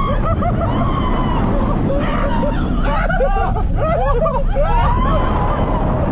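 Several roller-coaster riders screaming and shouting at once, their cries overlapping most thickly about halfway through, over a steady low rumble from the moving ride.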